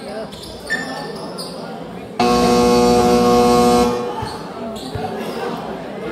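A basketball game buzzer sounds once, a steady single-pitched tone lasting nearly two seconds, starting about two seconds in. A basketball bounces on the court around it.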